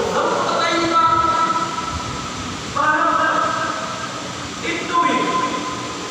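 A man's voice chanting into a microphone in long, held, sliding notes, in three phrases of one to two seconds with short breaks between them.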